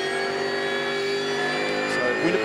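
Racing V8 engine of a Holden Commodore V8 Supercar heard from inside the cockpit, held at steady high revs with an even, unchanging note.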